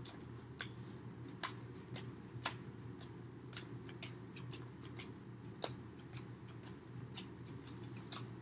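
Tarot cards being shuffled by hand: soft irregular clicks and flicks as cards slide and tap against the deck, several a second, over a low steady hum.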